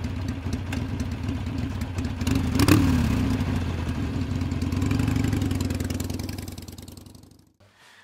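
A motorcycle engine running steadily, with one quick rev that rises and falls about two and a half seconds in, then fading out over the last couple of seconds.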